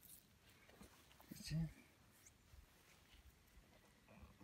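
Near silence: faint rustling, with a brief low murmur of a man's voice about one and a half seconds in.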